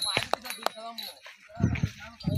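Men calling and shouting to drive a pair of Ongole bulls pulling a stone weight, with a few sharp clicks in the first second.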